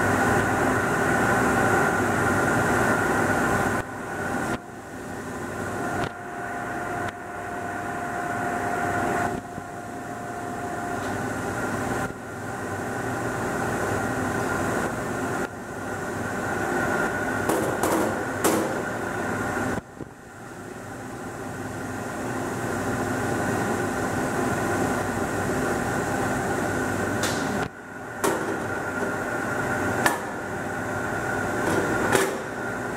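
Steady hum of furnace-room machinery carrying several constant tones; the level drops sharply several times and builds back up after each drop. A faint steady whistle sounds from about six seconds in for about five seconds, and a few light metal clinks come near the middle as the metal fixture is handled.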